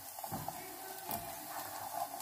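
Faint, steady sizzle of garlic cloves frying in oil in a saucepan, with a silicone spatula stirring them in the pan.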